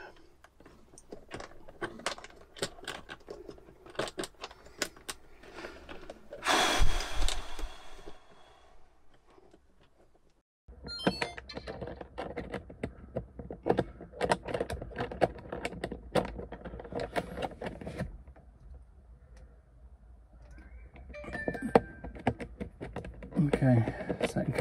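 Hands working small parts and wiring behind a van's dashboard while fitting a USB charger socket and threading on its ring: a run of small clicks, taps and rattles close to the microphone, with a louder scraping rustle about seven seconds in.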